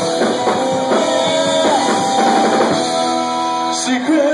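Live rock band playing an instrumental passage without vocals: drum kit beating a steady rhythm under electric guitar and held notes from a saxophone.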